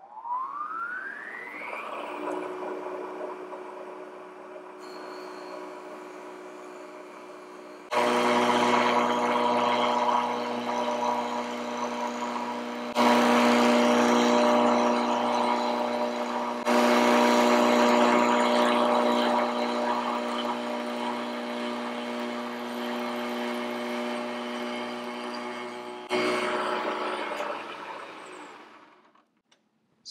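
Milling machine spindle starting with a rising whine, then running steadily on its fast speed. From about eight seconds in, a spiral milling cutter cuts purpleheart wood, much louder and rougher, with the cutter burning the wood at this speed. The cut ends around 26 seconds and the spindle winds down.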